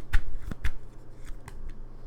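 A deck of tarot cards being shuffled by hand: a few sharp card snaps in the first second, then softer, sparser shuffling.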